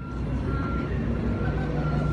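A vehicle engine running steadily as a low rumble, with a faint high beep that sounds several times at irregular intervals.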